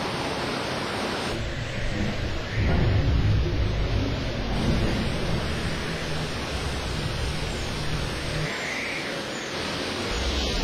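Hurricane wind and rain on a camcorder microphone: a steady rushing noise, with a heavy low rumble of wind buffeting the microphone that swells about two and a half seconds in and eases near the end.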